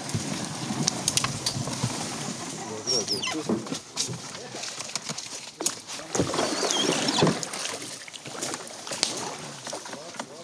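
A canoe being worked through a channel choked with fallen branches and debris: scattered sharp knocks and cracks of wood against the hull and paddle, over voices talking. Loudest between about six and seven and a half seconds in.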